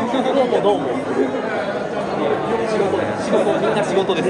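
Indistinct conversation, several people talking over one another, with the chatter of a busy hall behind.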